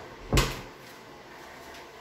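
An interior panel door pulled shut, landing with one sharp knock about a third of a second in, then stillness.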